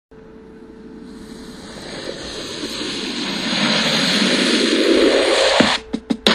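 Intro whoosh sound effect: a rushing noise that swells steadily louder for about five seconds, then cuts off suddenly. The first hits of a drum-machine beat come in right at the end.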